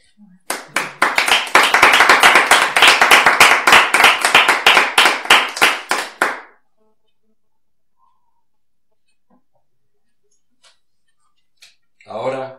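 A small group of people clapping their hands in applause. The clapping starts about half a second in, runs for about six seconds and dies away, leaving only a few faint clicks.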